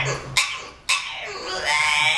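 French Bulldog "talking": voice-like dog vocalizing, with two short sharp sounds early on followed by a long drawn-out call that rises in pitch and holds.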